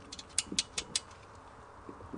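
Aluminium staging parts and bolts being fitted: a quick run of sharp metallic clicks, about five in the first second.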